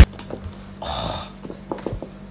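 A nearly empty plastic sauce squeeze bottle being squeezed, letting out one short spluttering burst of air about a second in, then a couple of light clicks. The sputter is the sign that the bottle is out of sauce.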